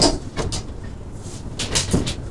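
A stylus tapping and scraping on an interactive whiteboard in several short strokes, one at the very start, one about half a second in and a quick run near the end, over a steady low room hum.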